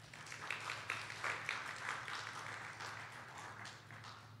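Audience applauding, rising quickly at the start and gradually dying away toward the end.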